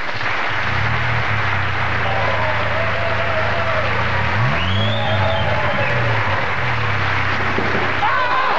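Studio audience applauding and cheering over a low, steady rally-car engine note that rises and falls once in a burst of revs about halfway through.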